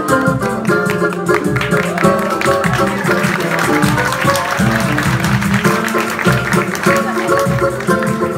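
Live samba group playing: nylon-string acoustic guitar with bass runs and a hand drum keeping a steady beat, with a woman singing into a microphone over them.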